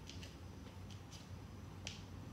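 A hand scoop scraping and digging soil in a plant pot: a few short, sharp gritty scrapes, the sharpest near the end, over a low steady hum.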